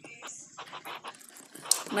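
A person chewing food and breathing close to the microphone: a run of short, soft, irregular mouth noises, with a word of speech at the very end.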